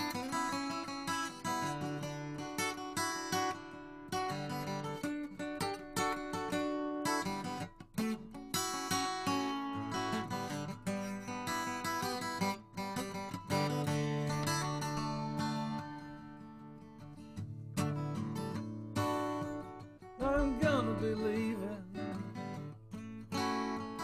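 Instrumental break of a country-rock song: strummed acoustic guitar chords with other instruments and no singing. A wavering melody line comes in about twenty seconds in.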